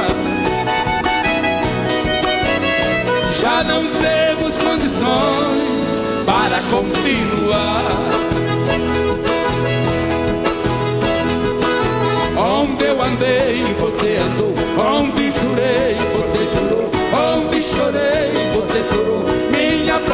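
Live sertanejo (Brazilian country) music from a stage band: voices singing over guitar, bowed strings and drums, without a break.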